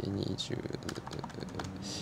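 Typing on a computer keyboard: a quick, irregular run of key clicks, with low muttered speech underneath.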